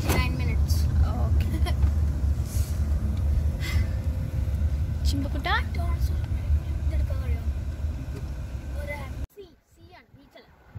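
Low, steady rumble of a car heard from inside the cabin, cutting off abruptly about nine seconds in.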